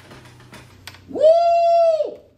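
A person's high-pitched whoop, "Woo!", held for about a second, swooping up at the start and dropping away at the end.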